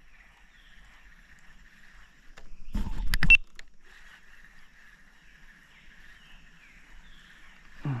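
A fish striking at a spinner lure on the water's surface: one short, loud splash about three seconds in, over a faint, steady high-pitched background.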